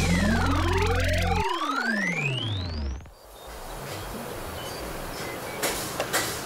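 Cartoon transition sound effect: two electronic tones sweeping in pitch, one rising and one falling across each other over about three seconds, over the last held chord of a children's song, which stops about one and a half seconds in. Then a softer steady hiss.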